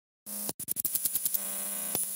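Glitchy electronic static and hum that starts abruptly about a quarter second in and stutters in rapid clicks, with a thin high whine held underneath.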